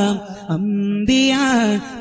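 Madh ganam, a Malayalam devotional song in praise of the Prophet, sung by a single voice that holds long, ornamented notes. There is a short break about half a second in, and a new phrase begins about a second in.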